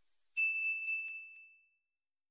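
A single bright ding sound effect, the kind used for a notification bell, struck with a few light clicks and ringing out to fade over about a second and a half.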